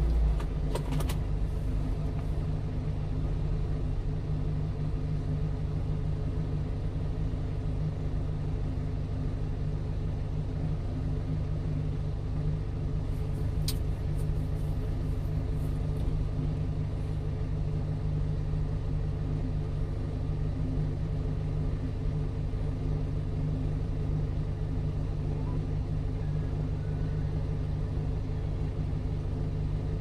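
A small truck's engine idling while stopped, heard from inside the cab: a steady low hum with no change in pitch. A single brief click comes about 14 seconds in.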